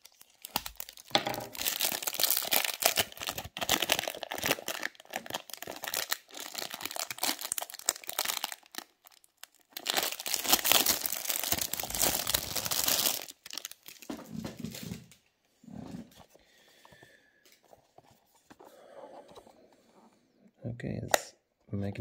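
Clear plastic shrink wrap being torn and peeled off a cardboard box, crinkling loudly in two long stretches, the second ending a little past halfway, then only faint rustles of handling.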